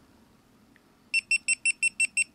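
GoPro HD Hero2 camera beeping: about a second in, a quick run of about seven short, identical high beeps, five or six a second. A run of seven beeps with the red LED flashing is the Hero2's power-off signal.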